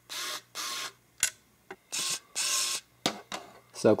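Xiaomi electric precision screwdriver running in four short bursts, in two pairs, as it drives small screws. There is a single click between the pairs.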